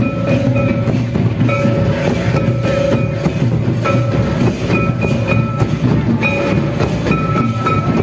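Live Adivasi folk dance music: a barrel drum and a large kettle drum beat a steady, dense rhythm, and a high melodic phrase repeats over it about once a second.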